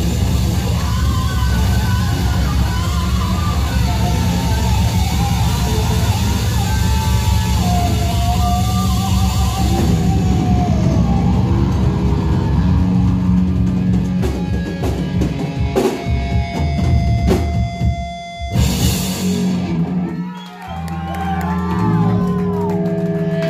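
Live heavy rock band playing loud: distorted electric guitar, bass guitar and drum kit, with a wavering melody line over the first half. From about two-thirds of the way in the song breaks into separate stabbed hits with a cymbal crash, then stops, leaving single guitar notes ringing.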